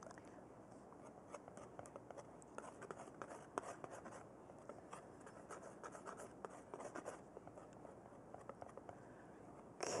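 Palette knife mixing paint on a palette: faint, irregular scraping strokes and light taps.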